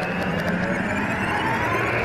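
Logo-intro sound effect: a swelling rush of noise that builds and then holds at a steady level, with a faint falling tone inside it.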